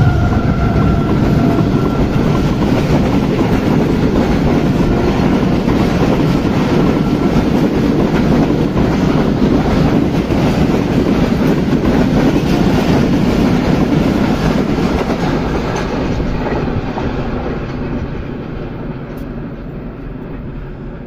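Passenger train running through at speed: the locomotive, then its coaches, a steady rush of wheel-and-rail clatter that fades over the last five or six seconds as the train draws away.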